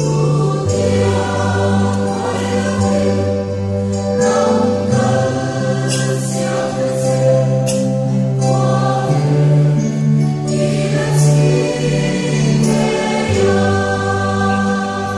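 Mixed choir of men and women singing in parts, holding long chords that shift every few seconds.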